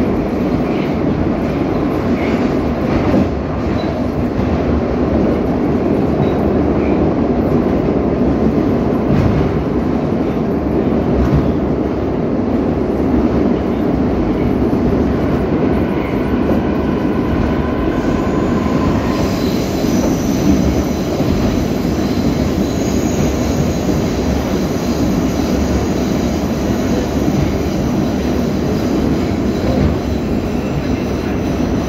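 Metro train running at speed through a tunnel, heard from inside the carriage beside the doors: a loud, steady rumble of wheels and running gear. Thin, steady high tones sit over the rumble and jump to a higher pitch a little past halfway.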